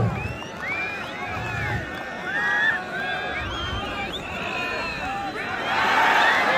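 Large crowd of spectators at a wrestling bout, many voices shouting and calling out at once, swelling into a cheer near the end as a wrestler is thrown to the ground.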